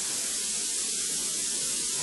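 Steady high-pitched hiss with no other sound: the background noise of an old analogue video recording, heard in a pause between spoken sentences.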